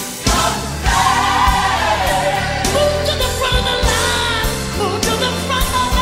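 Gospel song with a choir singing over bass and drums. Near the end a voice holds a note with a wide vibrato.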